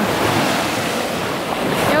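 Small sea waves breaking and washing up the beach in a steady rush of surf.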